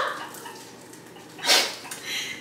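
Faint steady sizzle of an egg frying in a frying pan, with one short, sharp breathy noise about one and a half seconds in.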